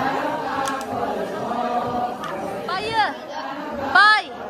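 A group of voices chanting a Ponung dance song together, holding steady notes. About three seconds in, one voice gives a loud high call that rises and falls, and a second such call comes right at the end.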